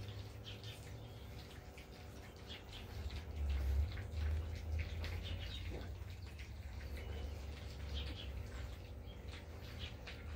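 French bulldog puppies eating dry kibble from a bowl: irregular small crunches and clicks of chewing, with a low rumble underneath.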